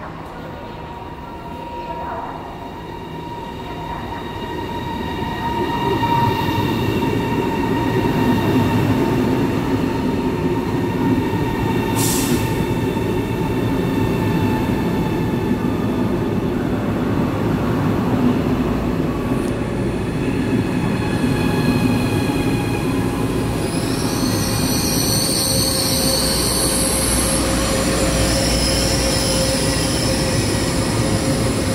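CRH high-speed electric train pulling into a station alongside the platform. Its noise builds over the first few seconds as it draws near, then runs steadily as it slows, with several steady whining tones and a brief hiss about twelve seconds in. Near the end come high squealing tones as it brakes to a stop.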